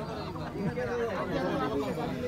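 Several people talking at once: a mix of men's voices chattering.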